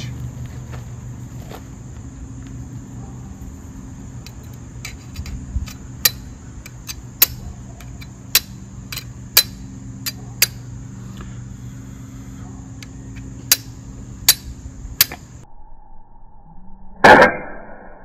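Chert being struck against the steel of a folding saw, flint-and-steel style: a string of sharp clicks, about nine loud strikes at uneven spacing with fainter ones between, over a steady background hum. The chert's striking edge is worn dull, so it takes many strikes to catch the char cloth. Near the end comes one loud short burst.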